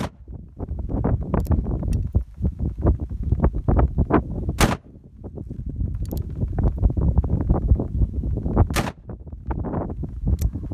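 An 1847 Colt Walker black-powder revolver firing three loud shots about four seconds apart: one right at the start, one near the middle and one near the end.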